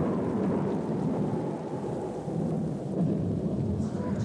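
Thunderstorm sound effect, thunder with rain, in a stage show's soundtrack; it comes in suddenly at the start and holds steady.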